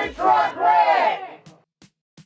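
A group of people shouting "1-800 TruckWreck!" together in unison, loud, breaking off about a second and a half in.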